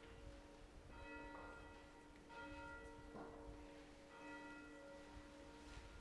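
Church bells ringing faintly: a new strike every second or two, each left to ring on so the tones overlap.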